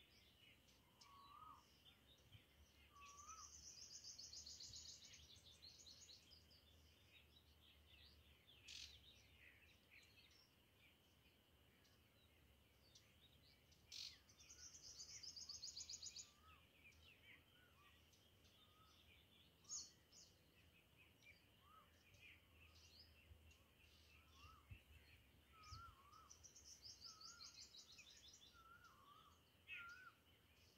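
Faint birdsong over near silence: a high, fast trill of rapidly repeated notes comes three times, each lasting two to three seconds, while softer short chirps from other birds come and go.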